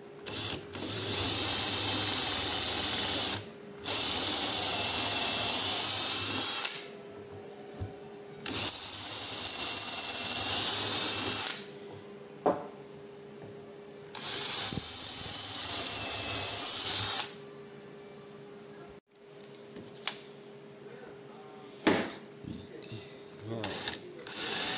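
Handheld cordless drill boring holes through wooden spar stock, the bit guided by a steel drill-jig block. The drill runs in four bursts of about three seconds each with short pauses between, followed by a few light clicks as the jig and work are handled.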